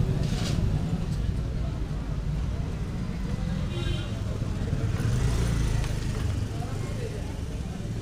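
Street market ambience: a motor vehicle's engine running close by, loudest about five to six seconds in, under scattered voices of passers-by, with a short high-pitched tone a little before the middle.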